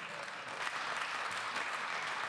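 Applause from lawmakers seated in a parliament chamber: many hands clapping together, growing louder a little over half a second in.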